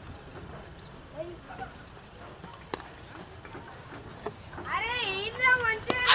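A single sharp knock about three seconds in, then from about five seconds cricket players shouting loudly in high, wavering voices.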